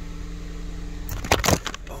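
Steady low hum of the idling 1.6-litre EcoBoost engine heard inside the car's cabin, then a hand-held phone knocking and clattering as it is dropped, with two loud knocks about a second and a half in.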